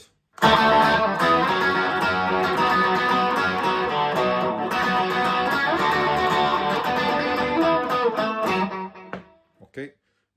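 Electric guitar playing a continuous riff in pairs of strings on the D, G and A strings. The playing starts about half a second in, runs for about eight seconds, then rings out and stops near the end.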